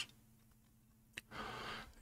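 A quiet pause in a man's talk: a small mouth click a little past a second in, then a faint intake of breath.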